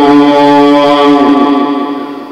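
A single voice chanting one long held note in a devotional ruqyah recitation, the pitch dipping slightly and the note fading out near the end.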